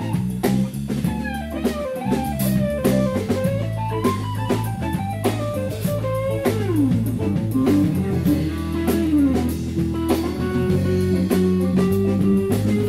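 Live blues band playing an instrumental passage: a lead guitar plays a single-note solo line with bent and sliding notes over bass guitar and drum kit.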